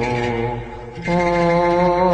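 A voice chanting a drawn-out, melismatic church hymn on long held notes; it fades briefly just past halfway and comes back on a higher note about a second in.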